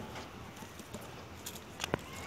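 Onion plants being pulled up by hand from a clay pot of soil: faint rustling and ticking of leaves and earth, with two sharp clicks close together near the end.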